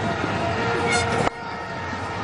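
Cricket stadium crowd noise with a horn blown in the stands, one held note. The whole sound drops suddenly a little over a second in.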